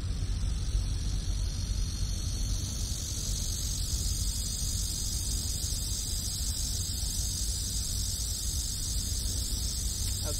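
Steady high-pitched insect chorus, like cicadas, buzzing without a break over a low outdoor rumble.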